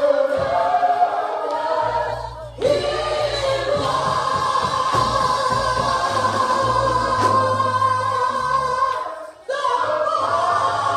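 Gospel singing in long, held notes over a low bass accompaniment that comes in about two seconds in; the singing breaks off briefly twice, once early and once near the end.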